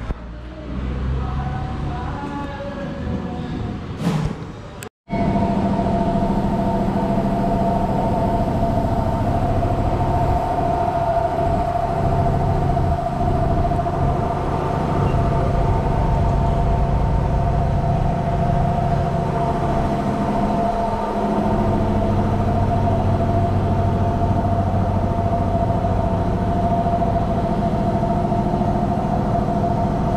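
A steady mechanical hum with a constant whine over it. It cuts out for a moment about five seconds in, then carries on unchanged.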